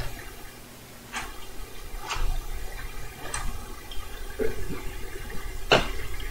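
Control keys of a portable Webcor Music Man reel-to-reel tape recorder clicking and clunking as they are pressed, about five times, the loudest near the end, over a steady low hum.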